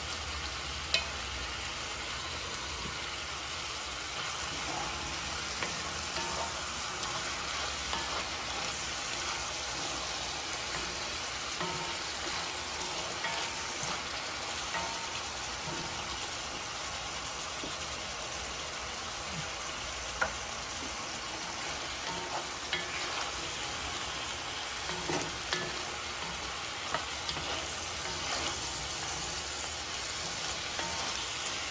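Green beans and garlic sizzling steadily in a black cast iron pot, stirred now and then with a wooden spoon, with a few light knocks of the spoon against the pot.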